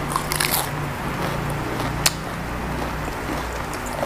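Close-miked biting and chewing of a raw Chinese cabbage leaf, with crisp crunches in the first half second and one sharp crunch about two seconds in.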